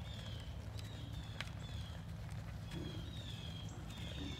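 A mule's hooves stepping on soft dirt as she walks over ground poles, with one sharp knock about a second and a half in.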